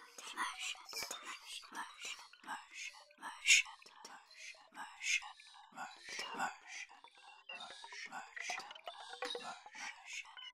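Electronic music: a dense stream of short, breathy whispered-voice fragments, a few every second, with one louder burst about three and a half seconds in.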